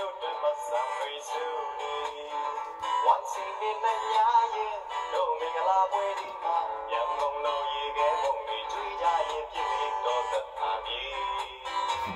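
A song with a singing voice over a musical backing, played back from a TikTok clip. It sounds thin, with no bass.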